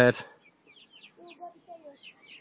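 Hens clucking softly a few times, with small birds chirping high and faint, just after a loud voice or call cuts off at the very start.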